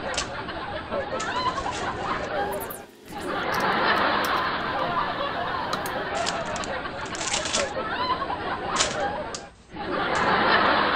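Indistinct background chatter and giggling, with a few sharp clicks along the way.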